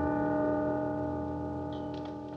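Film score music: one held orchestral chord with brass, sustained and slowly dying away.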